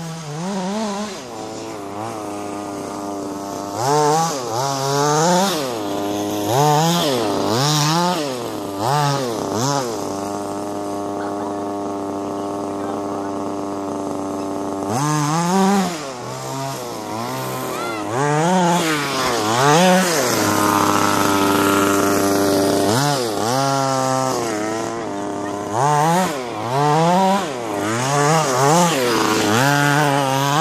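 Small two-stroke engines of radio-controlled off-road buggies, revving up and falling back over and over as the cars race over the jumps, with a couple of longer stretches held at a steady note.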